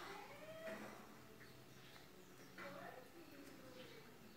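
Faint animal calls in the background: a short call about half a second in and a longer, wavering call from nearly three seconds in, over otherwise near-silent room tone.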